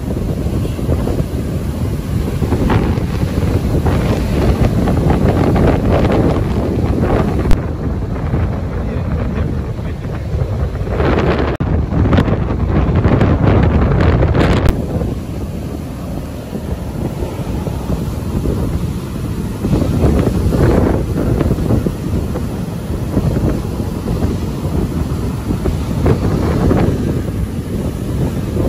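Strong storm wind buffeting the microphone over heavy breaking surf: a loud, rumbling rush that swells and eases. One sharp click stands out about seven seconds in.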